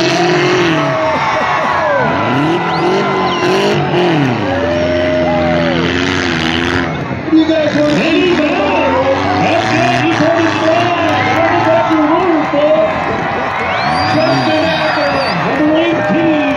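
Demolition derby car engines revving up and down, several overlapping, under crowd chatter from the stands.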